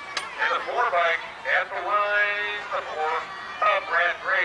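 A man's voice calling over a public-address loudspeaker, the words not made out, with one long drawn-out syllable about two seconds in.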